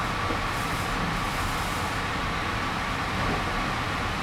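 Steady background noise: an even hiss over a low rumble, with a faint high steady hum.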